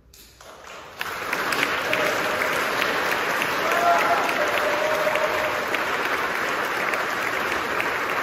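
Audience applauding, starting about a second in after the final chord of the concerto has died away, then clapping steadily.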